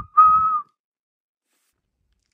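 A person whistling: a short steady note, then a second steady note of about half a second, imitating a weasel whistling.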